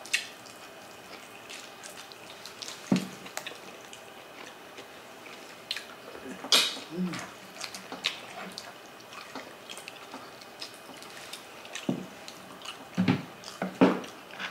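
Close-miked eating: wet chewing and lip smacking of soft, gelatinous balbacua stewed meat, heard as scattered sharp wet clicks, the loudest about six and a half seconds in and a cluster near the end.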